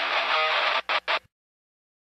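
Guitar-driven soundtrack music that stutters with two short breaks just under a second in, cuts off at about a second and a quarter, and leaves dead digital silence.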